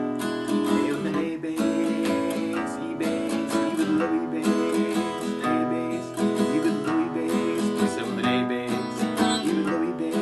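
Acoustic guitar played in a country waltz pattern: a single bass note picked on a low string, alternating between the chord's root and fifth, followed by down-up strums of the full chord, moving through E, E7, A and B7 chords.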